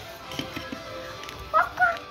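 A voice making two short, quack-like calls near the end, each jumping up in pitch, over faint background music.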